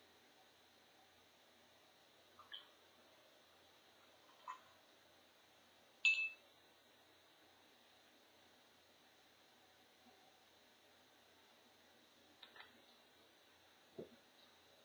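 Quiet room tone with a few soft taps from handling small craft items. About six seconds in comes a sharp clink with a brief high ring: a paintbrush set down against a glass jar of water.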